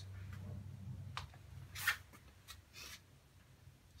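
A paintbrush scrubbing paint on a watercolour palette: a few short brushing strokes, the loudest about two seconds in, over a low steady hum.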